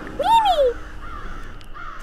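A single short call, about half a second long, rising and then falling in pitch.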